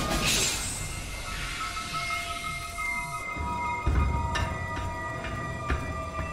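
Tense, suspenseful film score of sustained high tones. It opens with a hiss of gas venting from canisters that fades within about a second, and a low rumbling swell comes about four seconds in.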